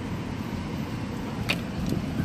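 A car driving along a city street, heard from inside the cabin: steady low road and engine noise, with a brief click about a second and a half in.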